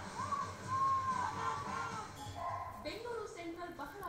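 Television news audio: music with a high voice holding rising and falling notes, then a lower voice coming in during the second half.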